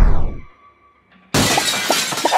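Music slides down in pitch and cuts out, then after a short pause glass shatters with a sudden loud crash, about a second and a half in.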